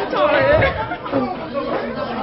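Two women's voices chattering excitedly over each other, mixed with laughter.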